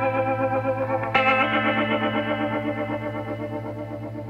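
Background instrumental music: sustained, slightly wavering chords, with a new chord struck about a second in, then slowly fading.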